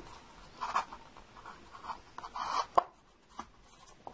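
Fingers handling a paper cup and plastic drinking straws: scattered short rubs and scrapes of paper and plastic, with a sharp click a little before three seconds in.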